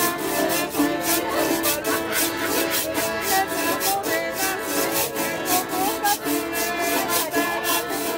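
Live instrumental vallenato: an accordion carries the melody over a strummed acoustic guitar, while a hand-held metal scraper (guacharaca) is scraped in a steady, quick rhythm.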